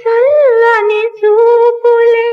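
A woman singing a Telugu song without accompaniment, holding high notes with a short rise and fall in pitch about a quarter-second in and two brief breaks in the line.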